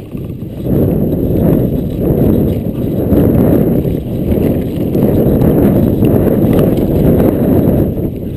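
Mountain bike riding fast down a dirt trail: wind buffeting the camera microphone as a loud, dense rumble, with the rattle of the bike and its tyres over rough ground.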